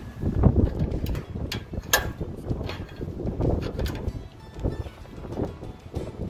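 Wind buffeting the microphone in uneven gusts, with a few sharp metal clicks about one and a half and two seconds in from the trailer gate's spring-loaded latch pin being handled.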